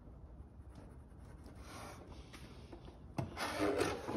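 Wood being worked by hand with a scraping or rasping stroke: a faint stroke about two seconds in, then a louder one that starts sharply near the end.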